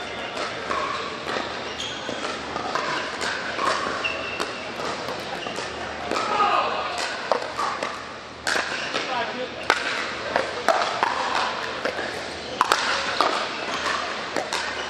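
Pickleball paddles hitting the plastic ball with sharp pops, sparse at first and then coming thick in a rally from just after the serve, about halfway through. Indistinct voices echo in a large indoor hall underneath.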